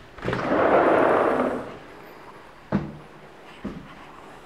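A door being opened: a scraping rush lasting about a second and a half, then a sharp knock a second later and a softer one near the end.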